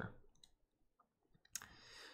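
Near silence with a few faint computer mouse clicks, and a faint hiss starting a little after midway.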